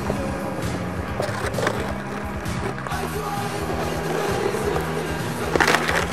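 Skateboard wheels rolling on asphalt, then near the end a loud crack and scrape as the board's trucks hit and grind along a concrete curb in a slappy grind, over backing music.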